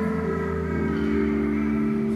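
Church organ playing slow, held chords, moving to a new chord about a second in.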